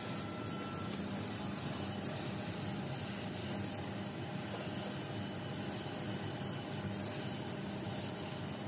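Gravity-feed spray gun hissing steadily as compressed air atomises paint onto a car body panel, with a brief sharper high hiss about half a second in and again near the end.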